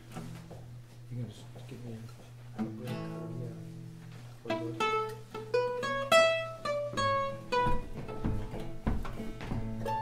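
Acoustic string band of guitars and mandolin playing the instrumental lead-in to a gospel song: soft sustained chords at first, then about four and a half seconds in a louder picked melody line of quick separate notes comes in over them.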